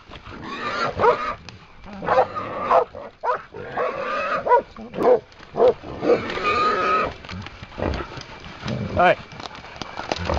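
Hog squealing again and again in short, pitched cries, with one longer cry past the middle, while it is caught and held by catch dogs.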